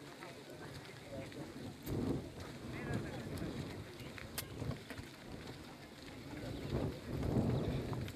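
Background chatter of men's voices, with wind rumbling on the microphone in gusts about two seconds in and again near the end.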